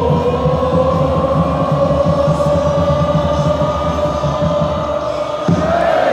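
A stand of football supporters singing one long held note together that slowly rises in pitch, over dense crowd noise. Near the end the held note breaks off into a shouted chant.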